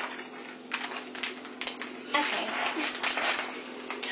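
Plastic packaging crinkling and rustling as it is handled, with scattered light clicks. The crinkling is thickest between about two and three and a half seconds in.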